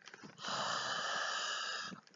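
A person breathing out hard through a wide-open mouth, one long steady "haaa" of breath lasting about a second and a half, starting about half a second in, breathed toward someone's face so they can smell it.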